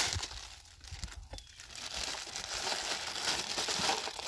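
Thin plastic bag crinkling as it is handled and pulled open, a packet of mothballs.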